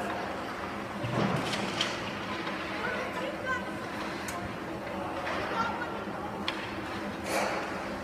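Ice rink game sound: indistinct spectator voices over a steady hum, with a few sharp clacks of hockey sticks and puck.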